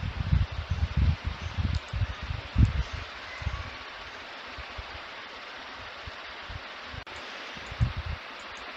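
Steady hiss of microphone background noise, with soft low thumps during the first three seconds and a faint click about seven seconds in.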